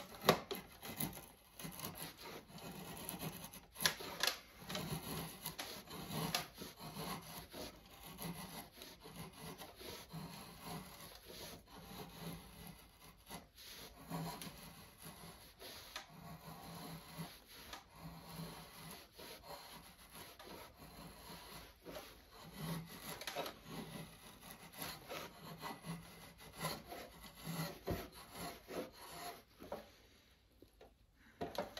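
Drawknife shaving a wooden axe handle held in a shaving horse: a run of short, irregular scraping strokes as the blade peels shavings off the wood.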